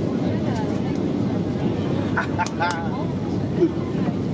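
Steady low cabin rumble of a Boeing 737-800 on descent, from its CFM56-7B engines and the airflow, heard from a window seat beside the wing. There are faint voices in the middle and a short louder sound near the end.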